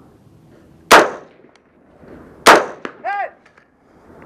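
Two rifle shots from a scoped AR-style rifle, about a second and a half apart, each with a short ring-out, followed about half a second after the second shot by a short ringing ping.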